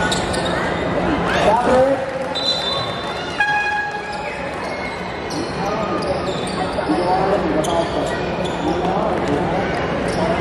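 Basketball game in a gymnasium: a crowd chattering and calling out, with a basketball bouncing on the hardwood court. A shrill referee's whistle blast comes about two seconds in, followed at about three and a half seconds by a short horn-like tone.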